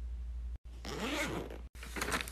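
A zipper pulled along in one stroke, its pitch rising then falling, about a second in, over a low steady hum.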